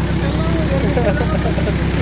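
A 475 four-cylinder tractor diesel engine running steadily at low revs, with an even rapid pulse, as it drives a centrifugal irrigation pump; the pump's outlet pipe gushes water into a field channel.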